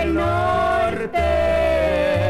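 Mexican corrido music playing from a vinyl LP. A long held melody note with vibrato sounds over steady, repeated bass notes, with a brief break about a second in.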